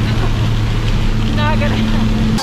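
Jump plane's engine drone heard inside the cabin: a loud, steady low hum with an even pitch. A brief voice cuts in near the end.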